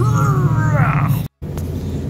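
Ford Mustang driving in slow traffic, heard from inside the cabin as a steady low engine and road rumble. Over the first second, a drawn-out sound slides down in pitch. Just past the middle, the sound drops out briefly at a cut.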